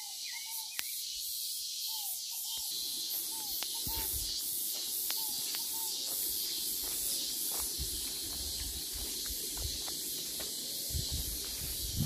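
Outdoor ambience in a farm field: a steady high-pitched hiss, with short repeated chirps and a few light clicks. From about three seconds in, a low rumble with occasional low thumps joins it.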